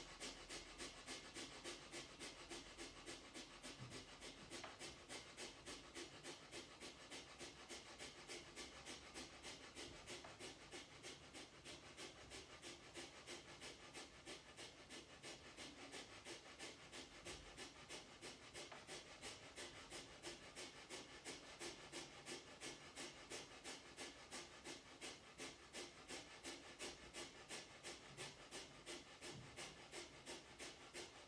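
Breath of fire (kapalabhati): a woman's quick, forceful exhalations, each driven by pulling the belly button towards the spine, repeating faintly and evenly at roughly two to three a second.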